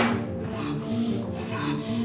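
A sharp knock right at the start, then about a second and a half of scraping and rubbing, over steady background music.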